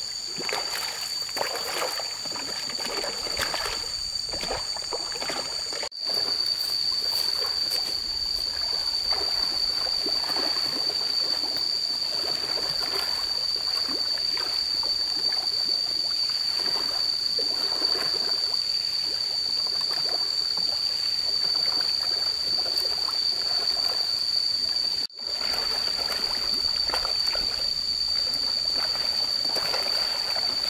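Fish splashing and slapping at the surface of a pond as feed is thrown to them, irregular small splashes throughout. A steady high-pitched whine runs over them the whole time.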